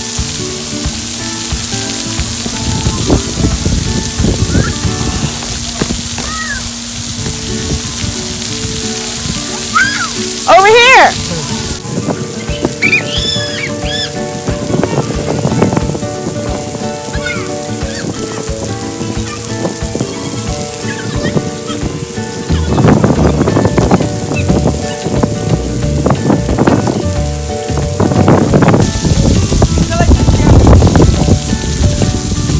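Background music over the steady hiss of splash-pad water jets spraying and pattering onto wet concrete. A high voice glides up and down a few times around ten to fourteen seconds in.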